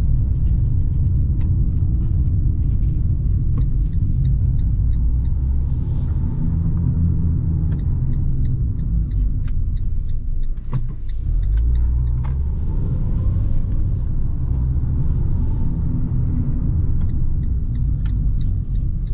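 Inside the cabin of a Fiat 500 driving slowly over cobblestones: a steady low rumble of tyres and running gear, with light ticks at times.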